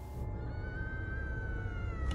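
A long, high-pitched scream from something in the woods: one drawn-out call that slowly falls in pitch. It is heard from inside a car over the steady low rumble of its engine. Some take it for a bobcat; others find it human-like.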